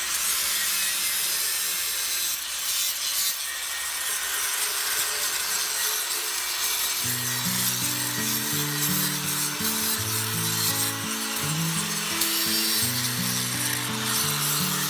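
Handheld angle grinder running, its disc grinding along the edge of a carved stone slab in a steady hiss. Background music with a melody comes in about halfway through.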